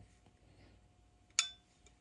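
A single sharp metallic clink with a brief ring, about one and a half seconds in, from a steel adjustable wrench knocking against metal.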